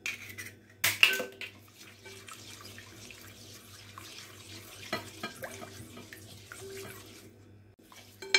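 Silicone spatula stirring a freshly added egg into a milky mixture in a glass bowl: wet sloshing with light scraping and ticks against the glass. A couple of sharp knocks come about a second in.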